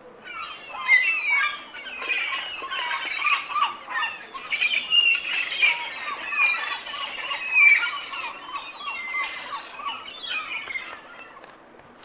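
Recorded seagull calls played from a children's talking pen touched to a picture book: many overlapping cries from a flock, fading near the end.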